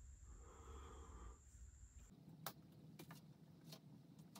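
Near silence: room tone, with a few faint, short clicks of paper inserts being handled in an open clipper box in the second half.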